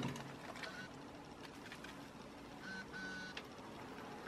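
Faint scattered knocks and handling noise from moving along the narrow metal aisle inside a GG1 locomotive's body, with a brief high squeak a little under three seconds in.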